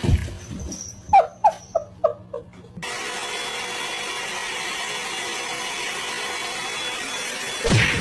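Five short, sharp squeals in quick succession, each falling in pitch. Then a handheld hot-air brush hair dryer runs steadily, with a faint steady whine in its airflow noise.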